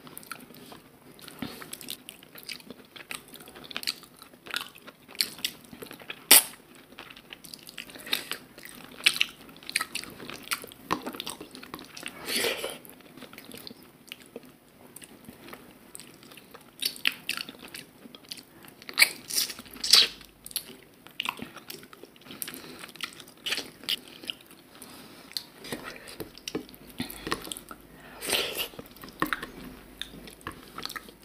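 Close-miked chewing and wet mouth sounds of a person eating mutton curry and rice by hand, with irregular smacks and clicks throughout.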